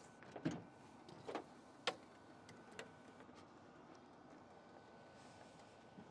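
Faint knocks and clicks of a cargo van's rear door being unlatched and opened, with one sharp latch click about two seconds in.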